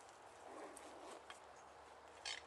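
Near silence: faint rustling with a few light clicks, as of handling and shifting feet in dry leaf litter.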